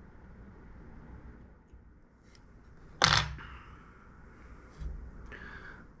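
Quiet hand work at a fly-tying vise as thread is wrapped over a folded bunch of Flashabou, with one sharp click about halfway through and a smaller sound near the end.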